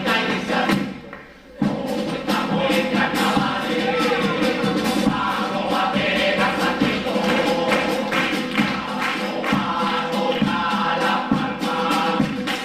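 A chirigota, an all-male Cádiz carnival singing group, singing together in chorus over instrumental backing with a regular percussion beat. The music drops away briefly about a second in, then comes back in sharply.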